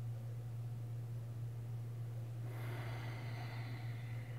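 A steady low hum of room tone. About two and a half seconds in comes one soft breath, lasting under two seconds, close to a lapel microphone.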